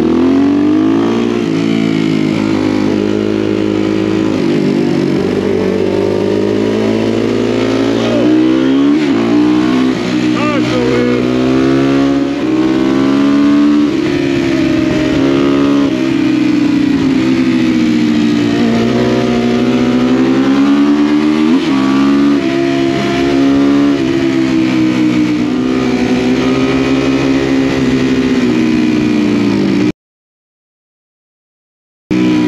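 Supermoto motorcycle engine heard from on board while riding, its pitch climbing and dropping every few seconds as the rider rolls on and off the throttle through the bends, over a steady rush of wind and road noise.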